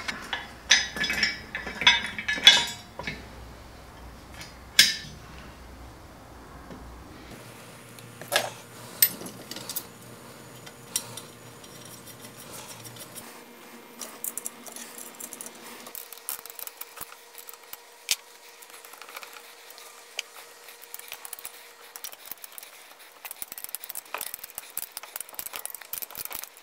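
Steel crane parts clinking and knocking as they are handled and fitted. A few loud knocks come in the first five seconds as the greased mast sleeve is worked on its post, then scattered small metallic clicks as a hand winch is set onto a steel tube.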